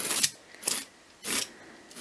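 Dog grooming brush drawn through long faux fur in quick strokes, about one every two thirds of a second, combing out fibres that are matted and clumped after washing.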